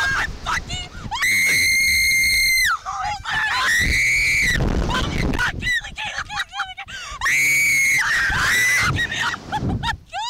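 Two young women screaming as the Slingshot ride launches them: three long, held, high-pitched screams, the first about a second in, with shorter cries between and wind rushing over the microphone midway.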